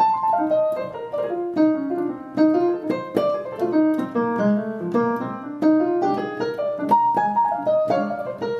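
Piano playing a quick melodic line over chords, several notes a second.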